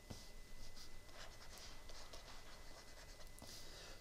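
Faint scratching and light tapping of a stylus writing a word on a drawing tablet.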